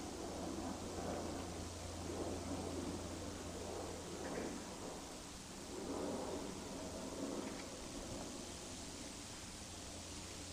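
Quiet background noise with a steady low hum and soft, irregular rustling.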